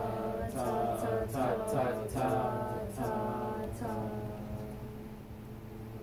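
A small group of voices singing sustained chords in several parts under a conductor's beat, the chord changing about once a second with a short attack at each change, growing quieter toward the end.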